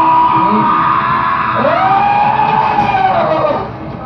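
A stage performer's voice in two long, drawn-out cries, each about two seconds, rising and then falling in pitch, with a short drop in level near the end.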